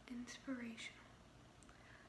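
A woman speaking softly in an ASMR voice: a short phrase in the first second, then a pause with faint room tone.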